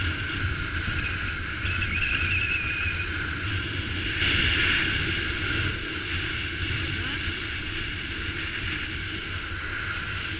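Wind buffeting a helmet-mounted action camera's microphone while skiing downhill, with the skis hissing and scraping over groomed snow; the noise swells briefly about four seconds in.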